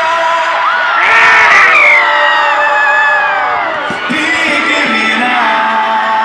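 Live concert opening music through a loud PA: sustained tones with pitch glides that rise about a second in and fall away near four seconds, with a crowd cheering and whooping over it, loudest between one and two seconds in.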